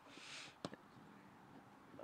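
Near silence, with a brief faint hiss and a single click near the microphone about half a second in.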